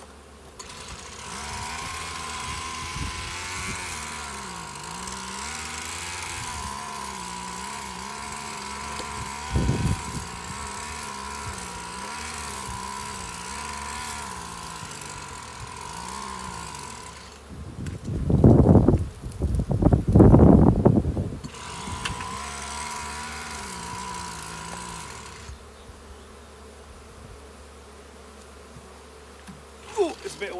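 Honeybees buzzing around an open hive, one flying close to the microphone so that its hum wavers up and down in pitch. A single knock about ten seconds in, and loud low rumbling bursts between about eighteen and twenty-one seconds.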